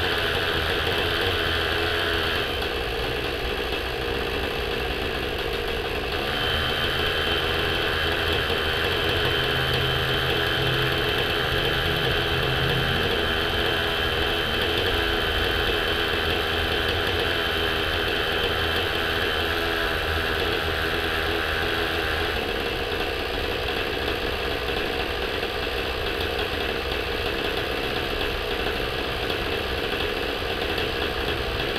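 Novarossi .57 two-stroke glow engine of a Raptor 50 RC helicopter running steadily on the ground, its sound shifting slightly a few times. A thin high whine comes in about six seconds in and drops out around nineteen seconds.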